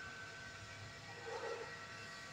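Faint steady background hiss and hum, with a thin steady high whine running through it and a brief faint sound about one and a half seconds in.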